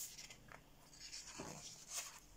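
Faint paper rustling and sliding as a page of a large paperback colouring book is turned by hand, with a couple of soft thumps as the page settles.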